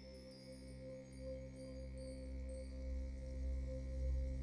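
Faint background music of sustained, steady chime-like tones, with a low rumble growing louder from about a second in.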